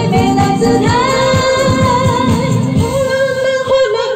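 Female singing into a microphone over an amplified backing track with a steady beat; the bass beat thins out near the end.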